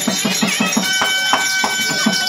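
Therukoothu accompaniment: a fast, even drum beat with jingling bells, joined about a second in by a high held note from a reed or harmonium.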